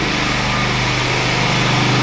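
A small engine running steadily at a constant speed, a low even hum.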